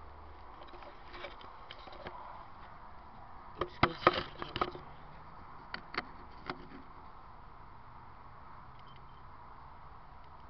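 Handling knocks and scrapes as a camera is moved and set down among garden plants. There is a quick cluster of sharp knocks about four seconds in and a few more a couple of seconds later, over a steady faint outdoor hiss.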